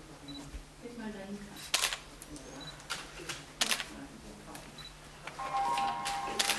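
Camera shutters clicking, two sharp clicks about two seconds apart, as photographers take pictures, over a low murmur of voices; a brief steady tone sounds near the end.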